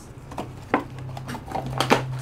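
Cardboard trading-card box being handled: a few short taps and knocks, the sharpest near the end, over a steady low hum.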